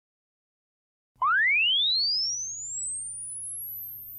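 An electronic sine-like tone that starts suddenly about a second in and sweeps smoothly upward from a low whistle to very high, fading as it climbs, over a faint steady low hum.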